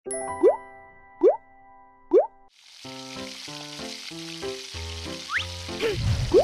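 Three quick rising cartoon 'plop' sound effects about a second apart, then a steady sizzle of beef patties frying on a grill pan starts about two and a half seconds in, all over light children's background music.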